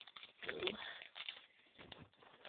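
A thin plastic toy blind-pack wrapper crinkling and clicking in quick irregular crackles as it is handled and opened, with a spoken word about half a second in.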